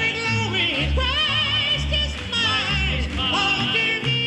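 Male Southern gospel quartet singing in harmony with strong vibrato over instrumental accompaniment with a pulsing bass line.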